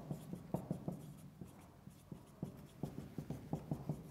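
Marker pen writing on a whiteboard: short strokes and taps, a few about half a second in, then a quick run of them from about two and a half seconds on.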